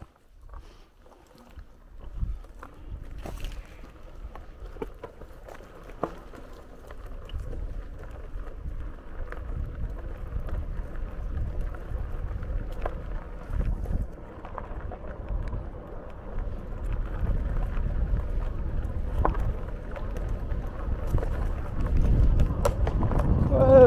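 Wind buffeting the microphone and the rumble of a RadRover 5 electric fat-tire bike riding a dirt trail, growing louder as it gathers speed, with scattered short clicks and rattles.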